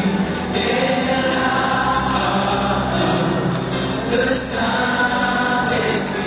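Live gospel music: voices singing together over a band with drums and electric bass, playing steadily.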